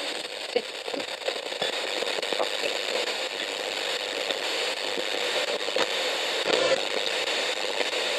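Steady crackling static with scattered faint clicks, like an old radio or a worn record.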